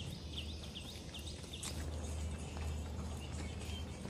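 A bird repeats a short rising chirp about twice a second, stopping a little over a second in, over a steady low rumble.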